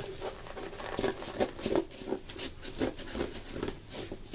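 Cardboard being cut and handled: an irregular run of crackling, scraping strokes that gets louder about a second in.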